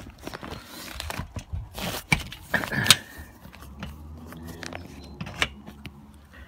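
Handling noises as a polytunnel is closed up: clicks, knocks and rustling of its plastic and mesh, with a short squeak about two and a half seconds in. A low steady hum runs underneath in the second half.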